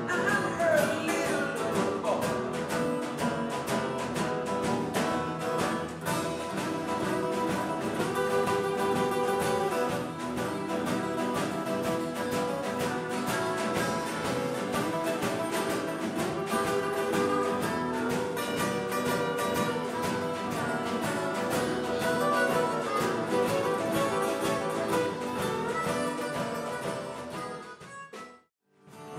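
Live blues-rock band music: a harmonica plays held, bending notes over a strummed acoustic guitar. The music fades out near the end.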